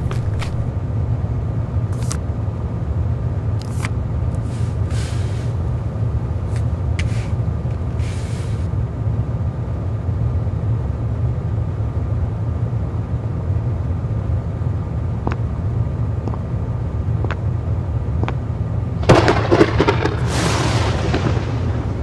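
A steady low rumble runs throughout, with scattered faint clicks and rustles in the first several seconds. About nineteen seconds in, a noisy whoosh swells up and then fades away.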